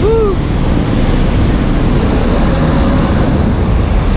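Steady low rumble of city street traffic, with cars and a bus passing.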